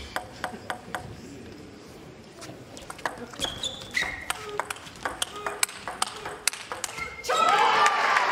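Table tennis rally: the plastic ball ticks sharply off bats and table at an irregular pace, about twice a second, with a few short shoe squeaks on the court floor. As the point ends, near the end, a loud burst of applause and cheering breaks out.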